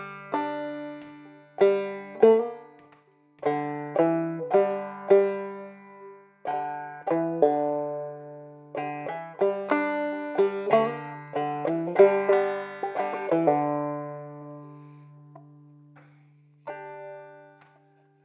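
Five-string banjo playing a phrase of an old-time tune, notes picked in quick groups with brief gaps while a low open string rings beneath. The phrase includes a quick slide, and its last notes die away slowly before one more note near the end.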